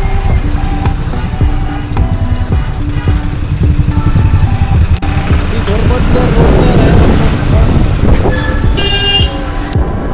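Heavy road traffic heard from a moving motorcycle: a dense engine-and-wind rumble with vehicle horns honking, and a loud high horn blast about nine seconds in.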